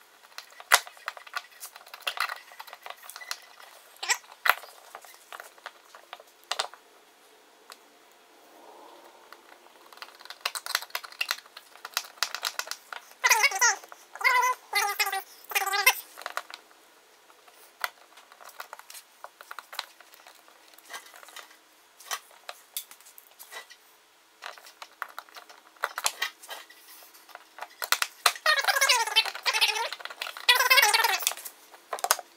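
Sharp clicks and scrapes of a screwdriver on the terminal screws of a NEMA 6-50 receptacle as the wires are tightened down. A cat meows several times, in a quick run about halfway through and again near the end, louder than the tool.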